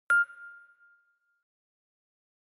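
A single bright ding struck once, a clear tone that rings out and fades away over about a second: a logo chime sound effect.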